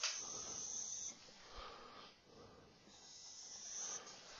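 Marker dragged across a whiteboard in two long strokes, a faint high-pitched hiss. The first stroke lasts about a second, and the second starts about three seconds in.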